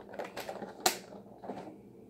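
Clear plastic takeout container being handled: a run of light clicks and crackles, with one sharp snap a little under a second in.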